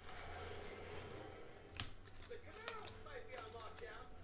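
Trading cards being handled and slid off a hand-held stack, with a sharp click about two seconds in and a few softer ticks, over a low steady hum.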